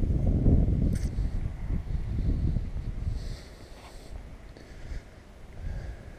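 A man clearing phlegm from his throat: a rough, noisy hawking over the first two or three seconds that then dies away to faint background rumble.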